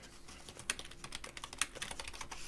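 Typing on a computer keyboard: a fast, irregular run of key clicks.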